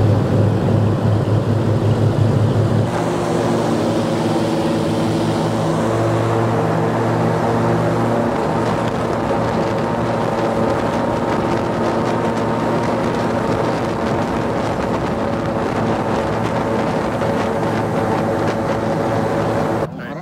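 Airboat's engine and large air propeller running at speed, a loud steady drone whose tone shifts about three seconds in.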